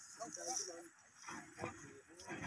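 Faint, distant voices: a few short calls in the first second, then little but faint background.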